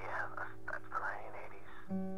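A man whispering, breathy and unvoiced, over background music of steady held low notes.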